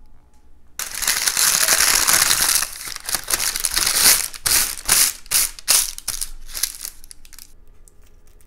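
Crumpled baking parchment crinkling loudly as hands press and smooth it onto a baking tray. It starts abruptly about a second in as a dense crackle, then breaks into separate crinkles before dying away near the end.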